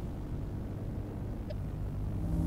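A low, steady rumble with no clear pitch, and a faint single tick about one and a half seconds in.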